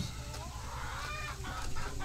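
Chickens clucking softly, with a short call about a second in.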